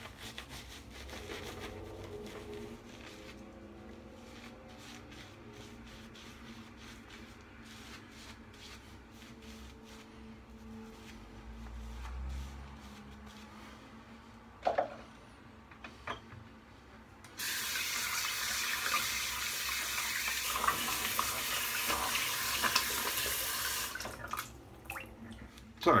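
Bathroom sink tap running in a steady hiss for about six seconds, starting about two-thirds of the way through. Before it there is faint rubbing from a shaving brush working lather over the face.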